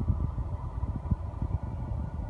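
Low, steady cabin hum of a 2012 Mitsubishi Lancer GT-A's 2.0-litre four-cylinder engine idling in park, heard from inside the car.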